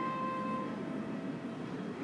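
Steady background hum of an airport check-in hall, with a faint held tone that fades out early on.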